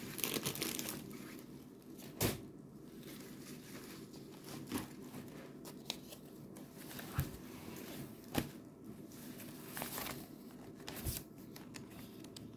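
Paper being handled: rustling and crinkling with scattered sharp taps and knocks, the loudest about two seconds in.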